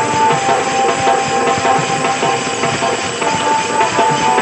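Live stage-play music: a held melody line over busy, steady percussion, loud and continuous. The melody steps down in pitch shortly after the start and back up near the end.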